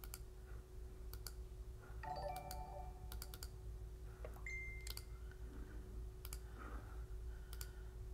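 Scattered computer mouse clicks and key taps, with a short pitched tone, like a chime, about two seconds in and another brief tone a little past the middle.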